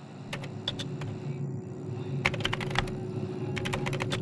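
Computer keyboard typing sound effect: three quick runs of keystrokes over a steady low hum.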